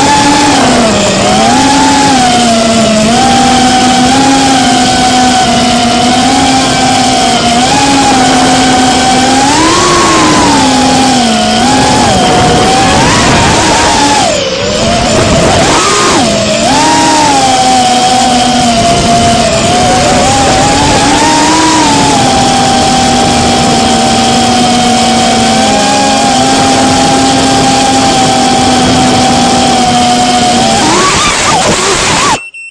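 Brushless motors and propellers of a Geprc Cinequeen FPV cinewhoop drone, heard from its onboard camera, whining loudly with a pitch that rises and falls as the throttle changes. About halfway through the throttle drops briefly, then comes back up.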